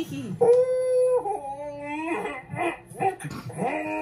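A high-pitched voice lets out a long wail, held on one note for about a second, then wavers and slides up and down like a whimper.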